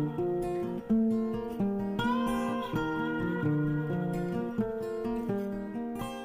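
Background music: acoustic guitar playing a melody of plucked notes, several ringing together.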